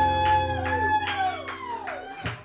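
Live rock band holding the final chord of a song: a sustained low bass note under a held high note that slides downward in the second half as it dies away, with drum hits throughout.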